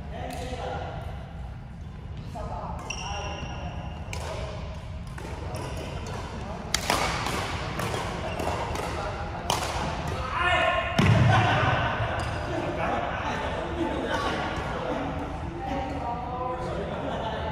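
Badminton doubles rally in a large sports hall: repeated sharp racket hits on the shuttlecock and footfalls on the wooden court, echoing in the hall. Short shoe squeaks come a few seconds in, and a heavy thud about two-thirds of the way through is the loudest sound.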